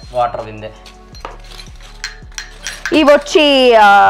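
Miniature brass cooking pots clinking as they are handled and set down, a string of small light metallic knocks. About three seconds in, a loud, long voice-like sound slides downward in pitch.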